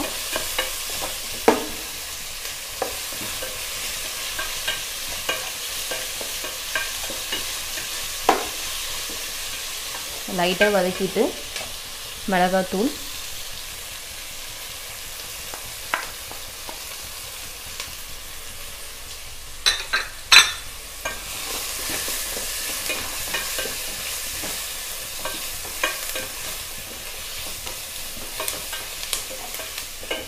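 Sliced shallots, garlic and curry leaves sizzling in hot oil in a stainless steel pot while being frying till brown, stirred with a spatula that scrapes and clicks against the pot. A couple of sharp knocks stand out about twenty seconds in.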